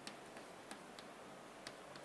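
Chalk clicking against a blackboard as letters are written: a handful of faint, sharp, irregular taps.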